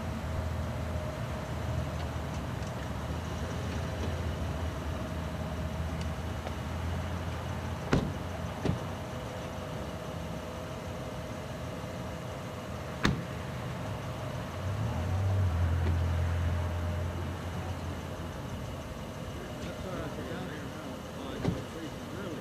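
Car engine running low and steady, with a few sharp car-door clunks, the loudest about eight and thirteen seconds in; the engine rumble swells for a couple of seconds past the middle. Faint voices come in near the end.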